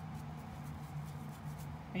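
Faint soft scratching of a paintbrush spreading acrylic paint over a rock, over a low steady hum.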